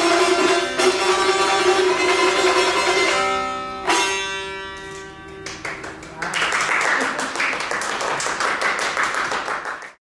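Dotar strummed in quick, repeated strokes, ending on one last stroke about four seconds in that rings out and fades. From about halfway a dense patter of quick, sharp sounds over a hiss takes over, then cuts off at the very end.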